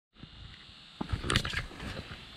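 A few soft irregular clicks and rustles from about a second in, over a faint steady hiss: a spinning reel being cranked and rod handled as a hooked bluegill is reeled up.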